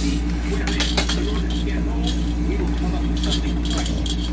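Sharp plastic clicks and knocks from a portable baby rocker's frame as its stand is set so that the rocker no longer rocks, a cluster about a second in and more near the end, over a steady low hum.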